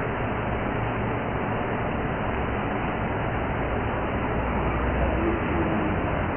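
Steady background hiss with a low hum: room noise, with no distinct footsteps standing out.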